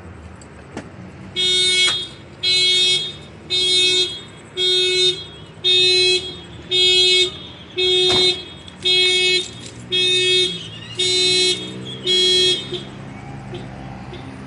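A car alarm sounding the horn in eleven even honks, about one a second, then it stops. Low traffic rumble runs underneath.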